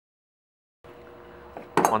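Dead silence for most of the first second, then a faint steady hum, and about two seconds in a quick metallic clink of a steel thread tap and wrench being handled.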